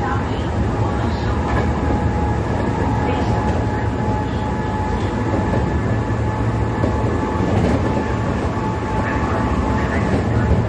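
Kyoto Municipal Subway 10 series train with armature chopper control running at a steady pace: a constant rumble of wheels and running gear with a steady whine held on one pitch.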